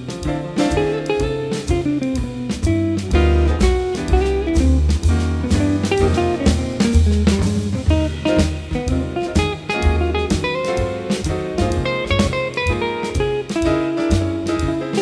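Jazz quartet playing an instrumental passage: a hollow-body archtop electric guitar leads with quick single-note lines over a moving bass line and drum kit.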